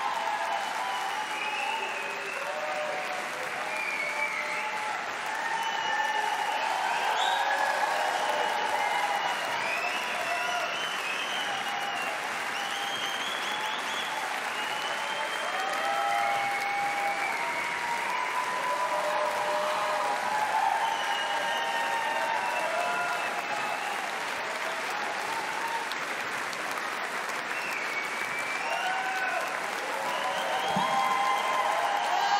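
A concert audience applauding steadily throughout, with scattered voices calling out over the clapping.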